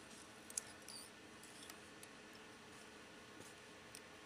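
Near silence with a few faint, small clicks, the clearest about half a second in: a whip finish tool and tying thread being worked around the head of a fly in the vise.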